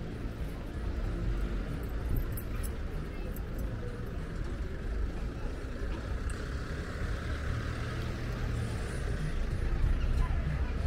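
Outdoor city ambience: a steady low rumble with a few light clicks about two to three and a half seconds in.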